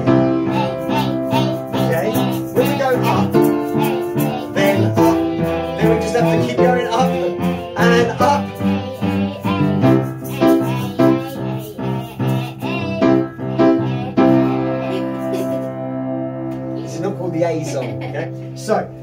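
Upright acoustic piano playing a chord progression, chords struck and left to ring, with one chord held for several seconds near the end.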